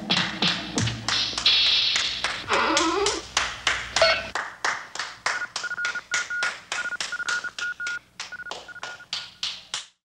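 Regular sharp clicks, about four a second, mixed with other brief sound effects in the first few seconds. From about five seconds in they are joined by a series of short high beeps at one steady pitch in an uneven on-off pattern.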